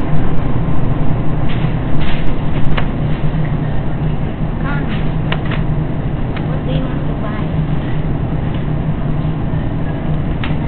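Steady low hum of supermarket background noise, with scattered light clicks and faint voices.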